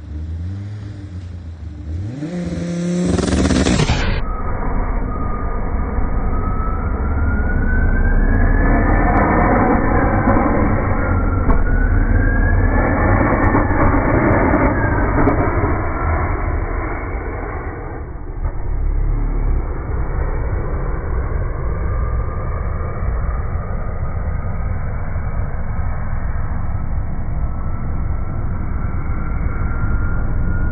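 Race car engine revving on launch control, then launching on ice. After the first few seconds the sound plays in slow motion, so the engine is drawn out and pitched down into slow, siren-like rising and falling whines that end in a long steady climb.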